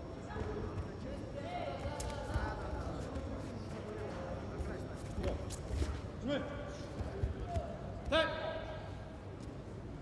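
Men shouting short calls during a judo bout, the loudest call about eight seconds in, with dull thumps of the judoka moving and landing on the tatami.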